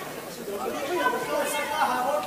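Indistinct chatter of several voices in a large hall, without music.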